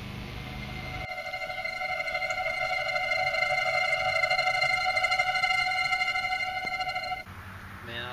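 High, steady buzzing whine of a mosquito-like insect, added in the edit. It starts abruptly about a second in, swells and fades as if the insect flies close and away, and cuts off suddenly near the end.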